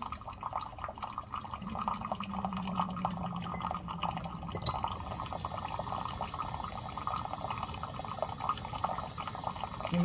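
A countertop hot water dispenser pours a thin, continuous stream of water into a glass mug, splashing steadily as the mug fills. A low, steady hum runs alongside it for about three seconds in the first half.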